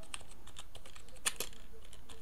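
Computer keyboard typing: a run of irregularly spaced keystrokes as a word is typed.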